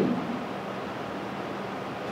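Room tone: a steady hiss with a faint low hum.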